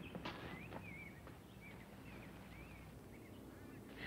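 Faint bird chirping: short warbling chirps repeating every half second or so, over a low background hum. A couple of soft knocks come in the first second, as two men sit down on a wrought-iron bench.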